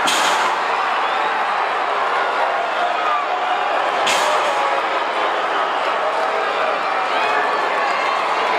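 Wrestling crowd shouting and yelling steadily, with two sharp bangs of impacts at ringside: one at the start and another about four seconds in.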